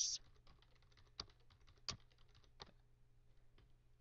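Faint computer keyboard keystrokes: scattered light taps, with a few sharper ones at about one, two and two and a half seconds in, as numbers are typed into a running console program.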